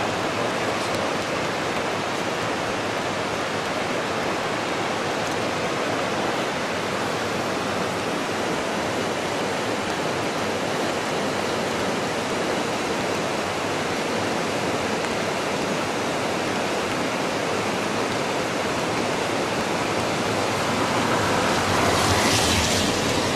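Steady rushing of river water, an even noise with no breaks, swelling slightly near the end.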